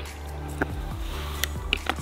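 A plastic squeeze bottle of ketchup squirting onto hot dogs, with a few faint squelches and clicks, over quiet background music.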